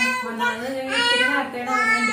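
A voice singing in long, held notes.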